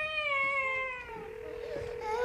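A baby's single long wailing cry that fades out just over a second in, followed by a faint steady tone.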